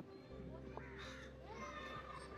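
Faint bird calls with a low steady hum underneath.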